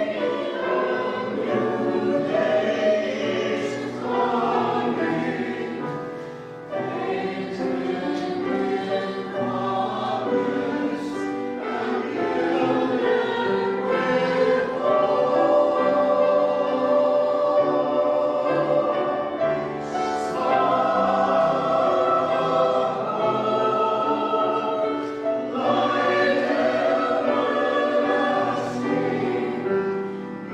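A mixed church choir singing an anthem under a conductor, with sustained vocal lines and a brief lull between phrases about six seconds in.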